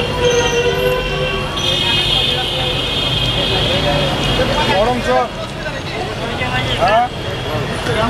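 Busy street noise with horns sounding in long steady blasts and people's voices, over the sizzle of fritters deep-frying in a kadai of hot oil.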